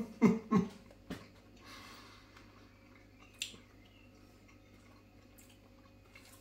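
A man's short, falling 'oh' sounds with a mouthful of food, four in the first second or so. After that he chews and breathes quietly, with one sharp breath about three and a half seconds in.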